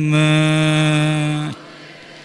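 A Buddhist monk chanting in Pali, holding one long steady note that stops about one and a half seconds in, leaving a low background hum.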